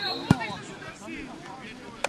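A football kicked once, a sharp thud about a third of a second in, with distant voices of players and spectators around it.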